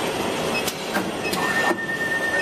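Automatic wire tape-wrapping and cutting machine running with a steady mechanical clatter, a few sharp clicks, and a steady high whine that sets in about two-thirds of the way through.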